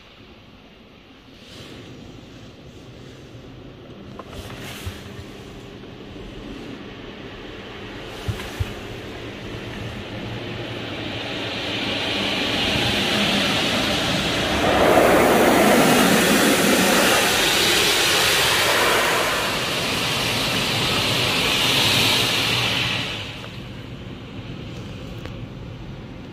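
Automatic car wash heard from inside the car's cabin: water spray and wash brushes working over the body and glass, with a steady machine hum beneath. The washing noise builds gradually, is loudest in the middle, and drops away suddenly about a second before the end.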